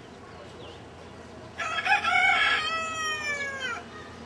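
A rooster crowing once: a single long call starting about a second and a half in, loud and falling in pitch at its end.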